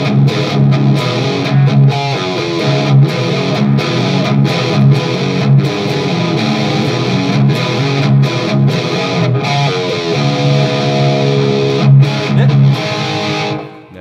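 Electric guitar through a KHDK Ghoul Screamer overdrive pedal, playing loud, distorted rhythmic riffs with its Bass toggle switch engaged, boosting the low end. The playing stops just before the end.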